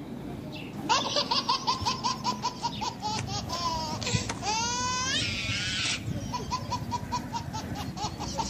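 High-pitched laughter in quick, short pulses, starting about a second in, broken by a rising squeal around the middle and picking up again near the end.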